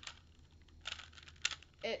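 Original Rubik's brand cube being turned by hand, its plastic layers clicking and scraping in a few short bursts. The cube is unlubricated and stiff to turn, and sounds terrible.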